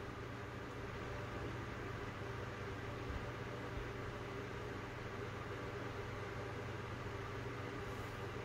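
Steady low hum and hiss of a fan running, with no changes.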